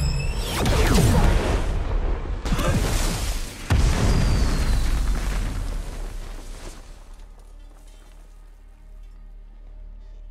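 Film action sound effects: weapon fire and a run of heavy explosions with falling whooshes, three sudden blasts in the first four seconds. The blasts die away into a rumble, leaving dramatic orchestral score on its own near the end.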